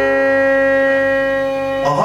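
Live violin music: one long, steady held note.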